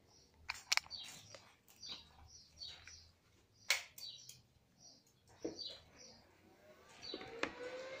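Faint birds chirping in the background, short notes repeating throughout, with a few sharp clicks, the loudest a little before the middle.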